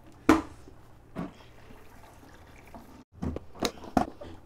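A fermenter lid being opened and handled. A sharp knock comes just after the start and a smaller one about a second in, with a cluster of clicks and a knock near the end and a faint liquid sound.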